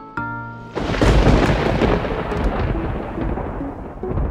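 A short plucked-string music phrase is cut off under a second in by a loud clap of thunder, which rumbles on and slowly fades.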